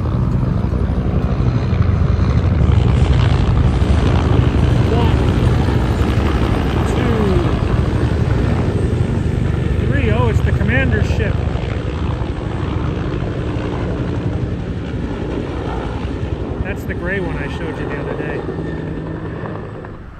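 A couple of US Air Force VIP-transport helicopters flying over, their rotor noise loudest a few seconds in and then slowly fading away as they pass.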